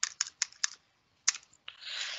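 Keys being pressed: a quick run of about five sharp clicks, then two more a moment later, as a number is keyed in to work out a subtraction. A short soft hiss follows near the end.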